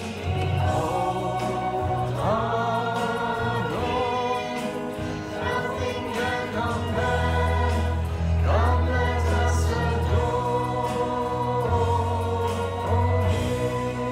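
A church congregation singing a worship song together, with instrumental accompaniment that holds long, sustained bass notes.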